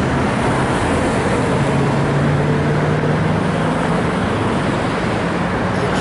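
Steady road traffic noise: a vehicle engine's low hum over road rumble, strongest through the middle of the stretch.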